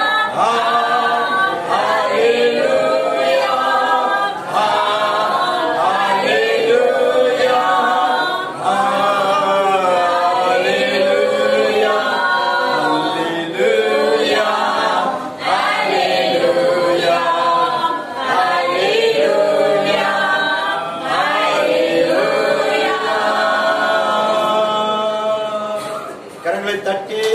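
Unaccompanied worship singing, a man's voice to the fore, in long flowing phrases with held notes.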